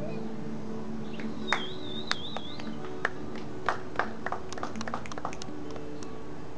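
Acoustic guitar played on its own, with low notes ringing on and sharp picked string attacks scattered through. About a second in, a high wavering whistle-like tone sounds for about a second and a half.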